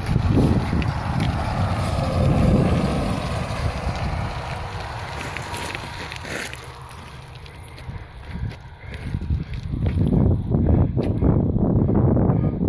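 Wind buffeting a phone microphone, a gusty low rumble, over bicycle tyres rolling on a gravel road. It eases off about halfway through and picks up again near the end.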